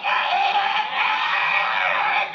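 Harsh, raspy squawking and screeching from a voice shouted through a handheld megaphone in a free-improvised noise performance. The sound is continuous and loud.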